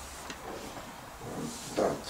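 Steady hiss of a live microphone while it is passed from hand to hand, with a faint murmur. Near the end a man's voice says a short word into it.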